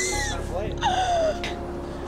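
A woman's excited gasps and exclamations over background music.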